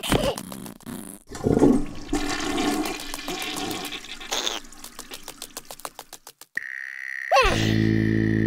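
Cartoon sound effects with short wordless character vocalizations over a rushing, hissing noise; near the end a high steady tone sounds, then a low held musical chord comes in under a sliding squeal.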